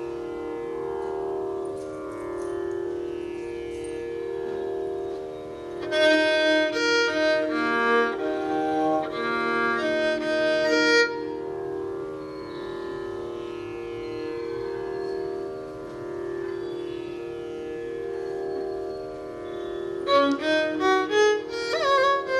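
Steady tanpura drone on the tonic and fifth, with a short run of violin notes about six seconds in. About twenty seconds in, the violin starts the piece with sliding gamaka ornaments in raga Karnataka Devagandhari.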